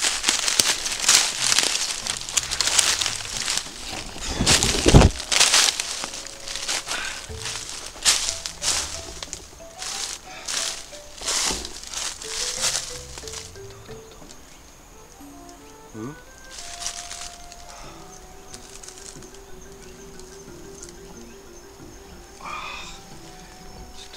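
Footsteps crunching through dry leaf litter in quick, irregular strokes over the first half, with one louder thump about five seconds in. A simple melody of background music runs under them and carries on alone once the steps fade, about halfway through.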